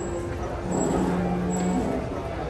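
Terminal hall ambience: a steady background of crowd noise echoing in a large hall, with a low tone held for about a second partway in.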